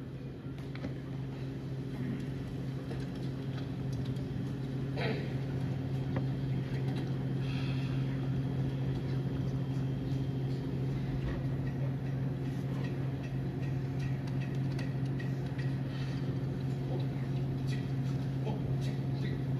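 Room tone in a large hall: a steady low hum, with scattered faint clicks and knocks as a jazz band waits to start.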